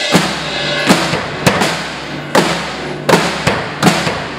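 Live rock band playing without vocals: a drum kit with a string of loud, unevenly spaced drum hits and cymbal crashes over strummed acoustic guitar.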